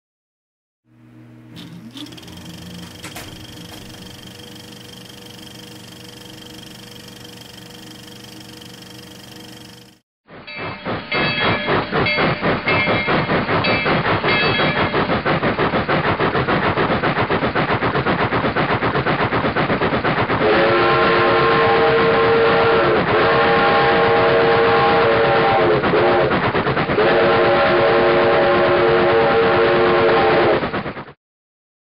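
Steam locomotive working, with rhythmic exhaust chuffs. From about two-thirds of the way in, its multi-note whistle sounds in long blasts with two short breaks. Before this, a quieter steady hum with a few held tones runs for about ten seconds and cuts off suddenly.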